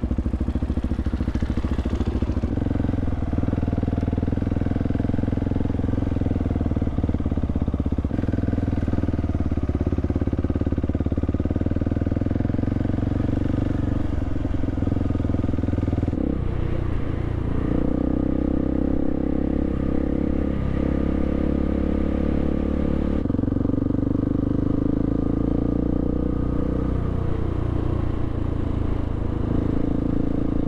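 Motorcycle engine running steadily under way on a dirt road, heard from the rider's own bike. The engine note changes pitch a little past halfway and again about two-thirds of the way through.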